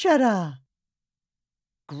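Speech only: a woman's voice says one word with a falling pitch, then a pause, and speech starts again near the end.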